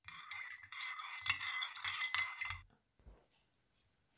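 A metal spoon stirring liquid in a ceramic cup, scraping and clinking against the cup's sides with a faint ringing. It stops after about two and a half seconds.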